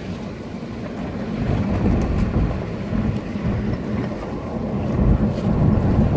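Cabin noise of a Nissan Pathfinder driving on a dirt road: a steady low rumble of tyres and engine.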